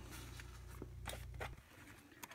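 Faint handling sounds of a cloth baseball cap: a few light clicks and rustles as a knife tip is set against its metal top button. A low steady hum underneath stops about three-quarters of the way through.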